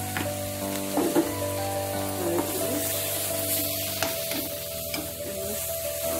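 Onions and vegetables sizzling in a steel wok as they are stir-fried with a slotted metal spoon, with a few scrapes of the spoon against the pan near the start and about a second in. Background music plays underneath.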